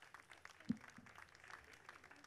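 Light, scattered applause from a small crowd of clapping hands, with a single low thump about two-thirds of a second in.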